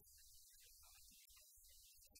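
Near silence: a faint steady low hum with background hiss.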